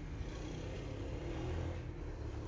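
Faint, steady low background rumble with no distinct events.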